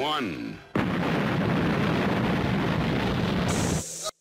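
A sudden, loud burst of noise, like a blast, starting about a second in and holding steady for about three seconds before cutting off near the end.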